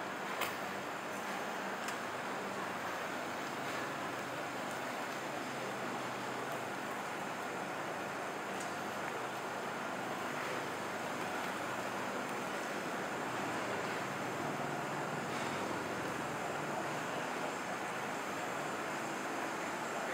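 Steady night-time city street background noise: an even rush with a low hum from traffic and vehicles.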